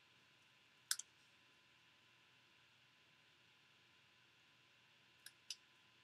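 Small scissors snipping the end of a cardstock strip to cut a flag notch: a crisp double snip about a second in and two more short snips near the end, over near silence.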